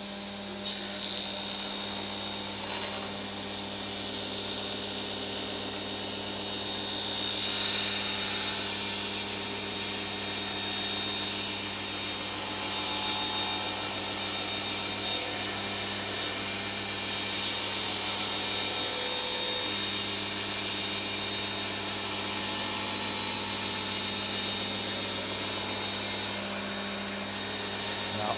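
Table saw motor running steadily while its blade rips a length of timber being fed slowly along the fence. The cutting noise thickens about seven seconds in and then holds.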